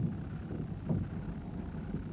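Steady low hum and hiss of an old television drama soundtrack in a pause between lines, with one short faint vocal sound about a second in.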